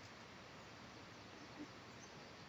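Near silence: faint, steady outdoor background hiss, with one soft, brief sound about one and a half seconds in.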